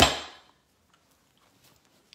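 A single sharp knock right at the start, with a short ringing tail that dies away within half a second, followed by near silence.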